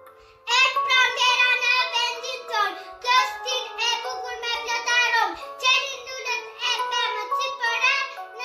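A young girl singing a song with music accompaniment, starting about half a second in.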